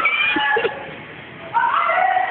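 High-pitched, drawn-out squeals from young voices, once at the start and again about a second and a half in, during a sumo-suit wrestling bout.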